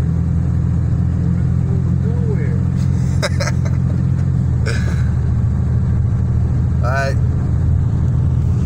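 Steady low drone of a truck driving on a dirt road, heard from inside the cab: engine and tyre noise. A couple of short clicks or rattles come through about a third and halfway in.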